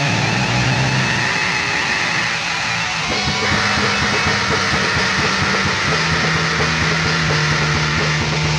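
Black metal band playing: distorted electric guitars, bass and drums from a four-track recording, with the riff changing about three seconds in.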